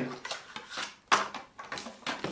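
Small plastic game pieces and cards being handled on a tabletop: a few light clicks and rustles, the sharpest a little after a second in.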